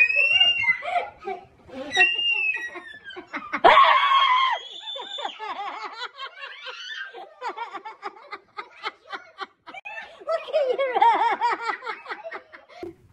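Several women and girls laughing hysterically in fits of rapid pulsed laughter, with a loud high squeal of laughter about four seconds in.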